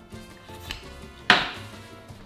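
A metal fork set down onto a wooden chopping board: one sharp clack about a second and a half in, with a smaller knock before it.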